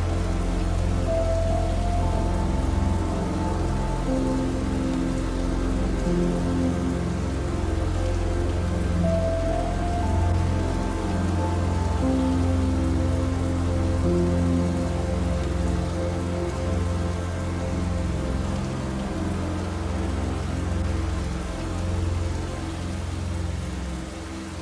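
Steady rain falling, mixed with soft, slow music of long held notes. A short phrase recurs about every eight seconds.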